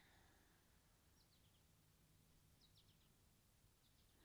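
Near silence, with faint high bird chirps in short descending runs, three times.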